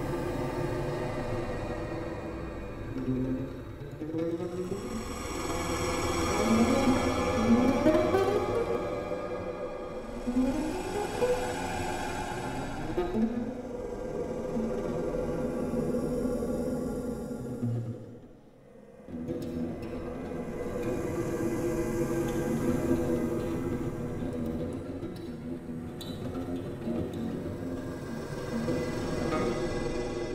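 Electroacoustic music for lute and live electronics: a dense layer of sustained, processed tones with repeated rising glides, briefly dropping away about two-thirds of the way through before the texture returns.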